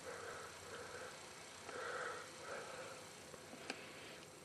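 Faint breathing close to the microphone, four soft breaths, with a small click near the end.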